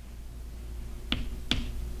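Chalk tapping against a chalkboard while writing: two short, sharp clicks, about a second in and again half a second later, over a low steady hum.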